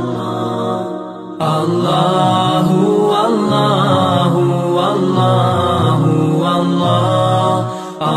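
Islamic devotional vocal chant (dhikr) in long held notes, used as background music. It jumps suddenly louder about one and a half seconds in.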